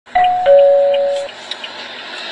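A two-note 'ding-dong' doorbell-style chime: a higher note, then a lower one a moment later, both ringing together and stopping a little over a second in.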